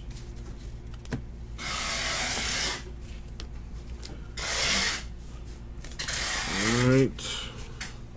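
Trading cards rustling and sliding against each other as they are handled and stacked, in three short bursts, with a faint click about a second in. A short voiced sound comes near the end.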